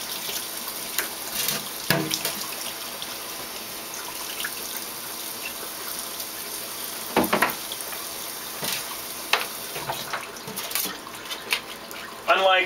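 Tap water running steadily into a sink, with a few knocks of parts being handled under the stream.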